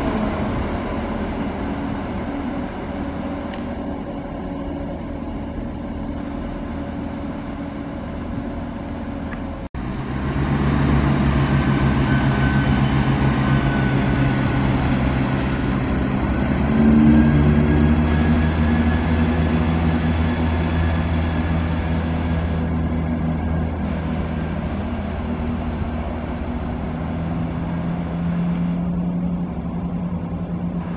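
ScotRail Class 170 Turbostar diesel multiple unit's engines running at the platform and then pulling away, the engine note growing louder and stepping up in pitch a little after halfway and again near the end. There is a brief dropout about a third of the way in.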